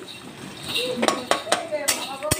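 Metal spatula scraping and knocking against a metal kadai while stirring onions frying in oil, with several sharp clinks in the second half.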